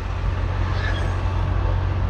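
Tata Intra V20 bi-fuel pickup's 1199cc engine running steadily, a low continuous hum with road noise.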